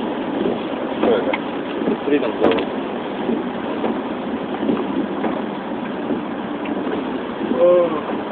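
Steady road noise inside a moving car, with tyres running on a wet road, and faint, indistinct voices now and then.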